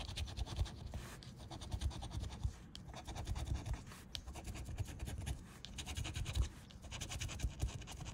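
A lottery scratch-off ticket being scratched: short scraping strokes in quick succession as the coating is rubbed off the play area.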